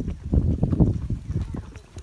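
Horse hooves clip-clopping on a dirt trail, heard from the saddle as a run of irregular low thuds that fade near the end.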